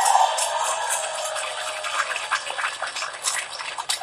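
Audience clapping and laughing in response to the preacher's joke, loudest at first and dying down over the few seconds.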